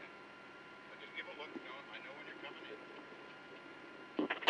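Faint, distant voices talking, over a low, steady electrical whine; no engine is heard.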